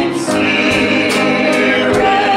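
A hymn sung by several voices together, holding long notes over a live band, with a couple of drum hits.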